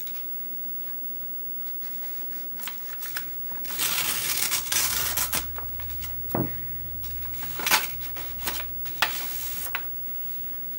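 A paper envelope being opened and a card drawn out: paper rustling and crinkling, loudest a few seconds in, with a few sharp clicks of handling on the bench.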